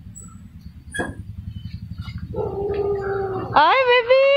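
Dog whining: a short cry about a second in, then a long level whine, then a loud high whine rising in pitch near the end. Underneath, a motorcycle engine idles with a low, fast pulse that stops just before the last cry.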